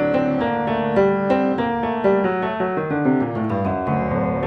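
Piano music with a busy passage of quickly struck notes, several a second, at a steady level: a silent-film style accompaniment.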